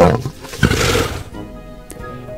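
A recorded lion roar, one rough roar starting about half a second in and fading over about a second, over light background music.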